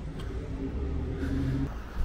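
A car engine running nearby, a steady low hum with a faint even tone, cutting off near the end.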